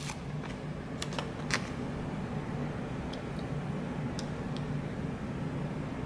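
Steady low hum of a washing machine and dryer running, with a few light clicks and taps from a sticker sheet being handled and a sticker pressed onto a planner page.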